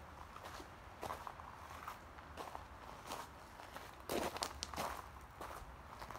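Hiker's footsteps on a rocky dirt trail scattered with dry leaves, an uneven run of steps, loudest about four seconds in.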